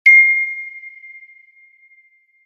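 A single bright, bell-like ding struck once at the very start, a single clear tone that fades away over about two seconds: a logo-reveal chime.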